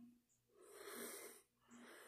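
Near silence, with one faint breath from a man about a second in.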